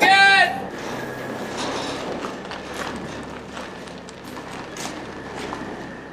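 A semi truck running steadily while it backs a grain hopper trailer, with scattered clicks and crackles from the trailer's wheels, whose brakes had been frozen on and have just been freed. A shouted "good!" comes at the very start.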